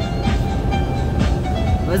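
Steady low rumble of engine and road noise inside a semi-truck cab cruising at highway speed, with music playing faintly.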